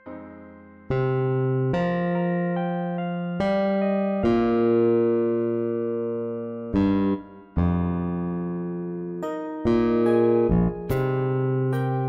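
Software-rendered electric bass guitar playing a slow melodic line one note at a time, each plucked note ringing and fading before the next, with a quicker run of notes near the end.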